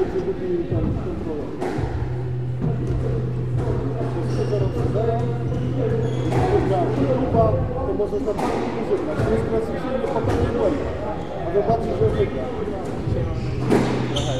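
Squash ball struck by rackets and hitting the court walls: a string of sharp knocks spaced irregularly, most of them in the second half, with background voices throughout.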